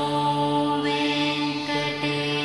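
Devotional background music: mantra-like chanting over a steady, sustained drone.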